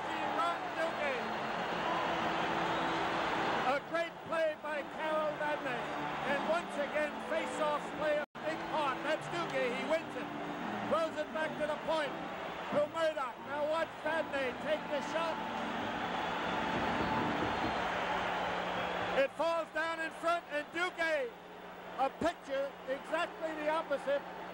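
Arena crowd cheering after a home-team goal. The roar swells and eases through the stretch, with men's voices talking over it.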